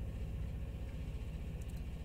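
A pause between words: only a low, steady hum with faint room hiss.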